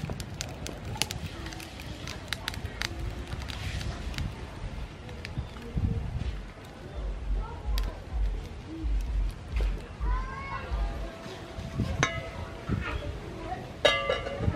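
Faint voices in the background with scattered light clicks. A low, uneven rumble of wind on the microphone comes in about halfway through for a few seconds.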